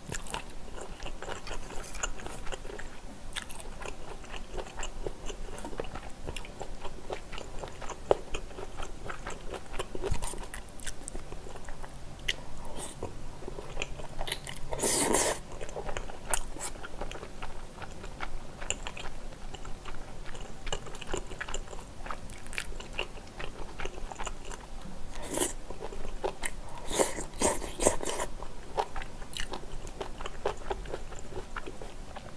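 Close-miked mouth sounds of a person eating spicy stir-fried squid and pork belly with glass noodles: chewing and biting, with many short clicks. A louder burst comes about halfway through and several more near the end.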